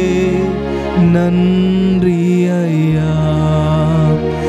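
Slow worship music played on a Yamaha PSR-S975 arranger keyboard: long held chords that shift about a second in and again near three seconds.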